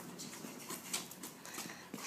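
Faint sounds of two dogs at play on gravel: short scuffs and scratches of paws and feet.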